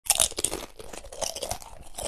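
Crunching, like crisp food being bitten and chewed: a quick, irregular run of crackles, loudest at the very start.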